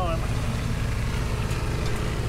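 John Deere tractor's diesel engine running steadily, a low even rumble.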